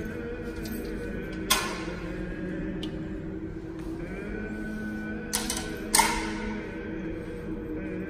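Slow music with long held notes, the notes changing about halfway through. Three sharp clicks or knocks cut across it, one about a second and a half in and two close together near the sixth second, the loudest sounds.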